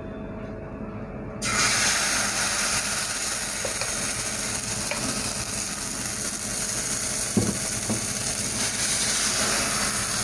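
Dosa batter sizzling on a hot, oiled tawa. The sizzle starts suddenly about a second and a half in, as the batter meets the hot pan, and goes on steadily while a steel ladle spreads it.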